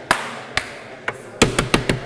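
Drumming on a wooden lecture podium: a couple of single taps, then from about halfway a quick, uneven run of taps, with a faint ringing tone under them.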